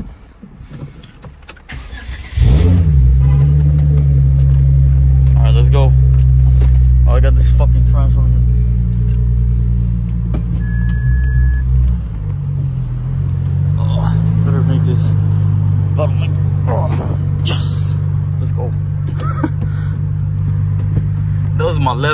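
Hyundai Genesis Coupe 3.8's V6 engine heard from inside the cabin, starting about two seconds in with a quick rising flare and then idling steadily and loudly; the idle note shifts around twelve seconds.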